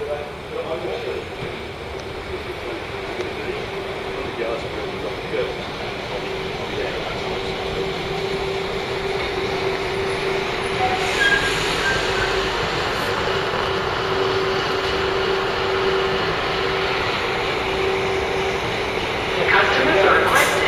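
A Class 172 Turbostar diesel multiple unit runs slowly into the platform, growing steadily louder as it approaches, with a steady whine held throughout.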